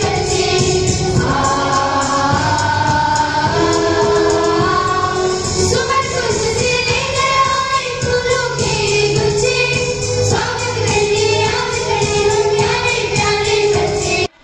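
A group of women singing a song together into a microphone, held sung notes over a steady rhythmic beat.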